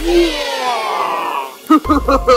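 A drawn-out voice-like sound that slowly falls in pitch, over a low rumble at first, followed by a few sharp clicks near the end.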